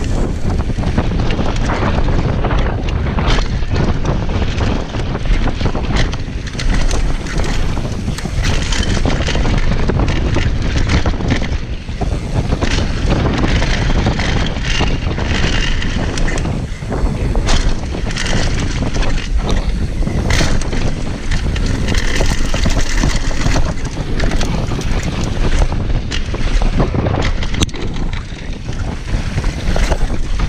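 Wind buffeting the camera microphone while a Transition TR500 downhill mountain bike runs fast down a dirt trail, tyres rolling over dirt and gravel. Frequent short knocks and rattles come through as the bike hits bumps.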